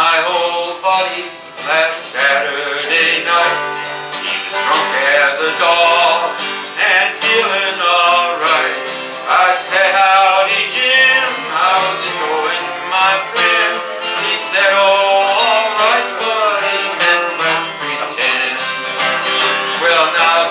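Two acoustic guitars playing an instrumental passage of a country tune together, strummed chords with picked notes.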